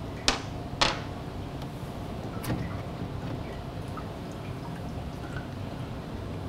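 Two sharp clicks about half a second apart, then a softer knock about two and a half seconds in, over a steady low hum: hands handling the dark plastic top plate and fittings of an impact-jet apparatus as the cap is taken off.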